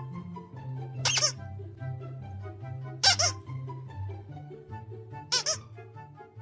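Squeaky plush dog toy squeezed three times, giving short, sharp, high squeaks about two seconds apart over light background music.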